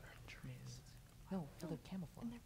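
Faint, low-voiced speech and whispering: team members conferring quietly over an answer.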